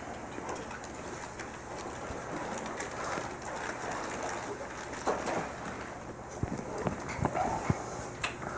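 A congregation getting up from wooden church pews: clothes rustling, feet shuffling and a scatter of soft knocks and creaks, busier in the second half, with a few faint short squeaky, coo-like sounds among them.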